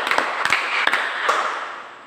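A class clapping together, a patter of many hand claps that dies away about a second and a half in.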